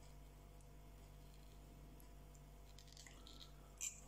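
Near silence: quiet room tone with a faint steady hum.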